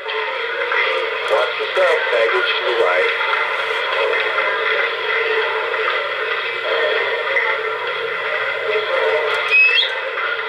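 Radio-style voice chatter, thin and band-limited like a two-way radio, from the sound system of an MTH O-gauge model steam locomotive standing still. A short rising squeal comes near the end.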